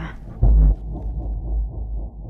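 Trailer sound design: a single deep, heavy pulse about half a second in, like a slow heartbeat, over a low steady rumble.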